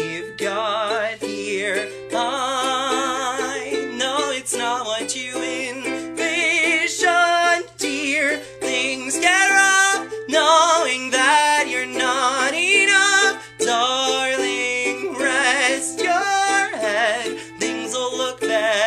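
A man singing a slow song with a wide vibrato on held notes while strumming chords on a ukulele.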